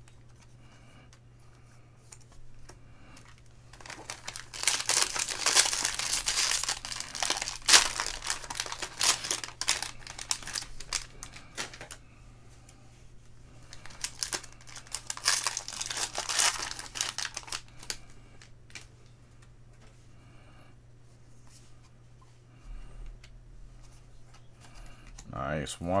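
Plastic foil wrapper of a 2021 Bowman baseball card pack being torn open and crinkled by hand, in two bouts of dense crackling: a long one from about four seconds in and a shorter one a couple of seconds later.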